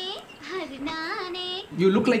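A woman singing in a high voice, a few long notes that bend up and down, with a short break about half a second in.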